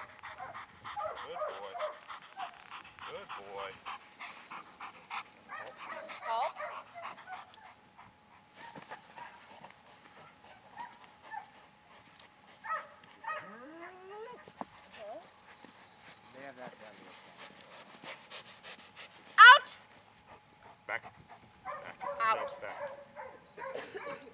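German Shepherd whining and yelping in high-pitched, broken calls during protection work, heaviest in the first several seconds and again near the end. There is one loud, sharp, rising yelp about three-quarters of the way through.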